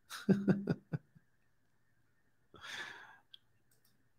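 A man's short laugh, a few quick chuckles in the first second, followed about two and a half seconds in by a breathy exhale like a sigh.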